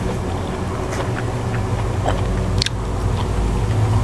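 Close-up chewing of a mouthful of sticky rice and Isan pork-and-vegetable curry (aom moo), with small wet mouth clicks and one sharper click a little before three seconds in. Under it runs a steady low hum.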